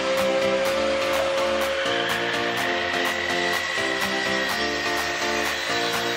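Electric mitre saw running and cutting softwood timber, its motor whine held steady over background music with a strummed guitar; the whine fades out near the end.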